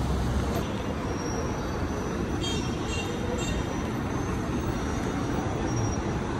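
Steady street traffic noise, with a few faint high chirps between about two and a half and three and a half seconds in.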